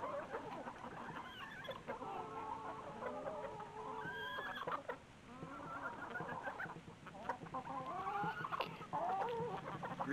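A flock of hens clucking while they feed, many short calls overlapping continuously.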